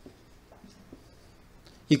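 Marker pen writing on a whiteboard: a few faint short strokes as characters are written and circled. A man starts speaking near the end.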